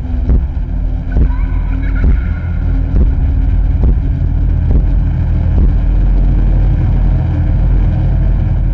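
Horror-trailer sound design: a deep, loud, sustained rumble with heavy booming hits about once a second.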